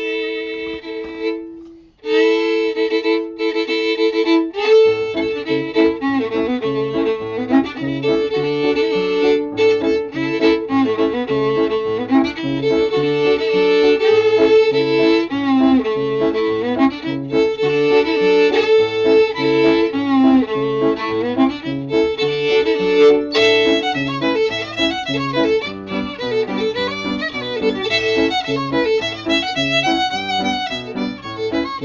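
Fiddle playing an old-time folk dance tune in an unusual mode, with piano accompaniment. The fiddle opens alone on two held notes, then takes up the melody, and the piano comes in about five seconds in with a steady, alternating bass line under it.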